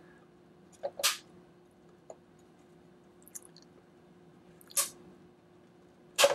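Side cutters biting into the hard plastic of a water-filter housing, each cut giving a short sharp crack: two main snips, about a second in and near five seconds, with a few faint clicks between. A faint steady hum runs underneath.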